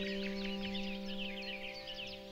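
Calm music holding sustained notes under a dense chorus of small birds chirping, many quick chirps at once, thinning out near the end.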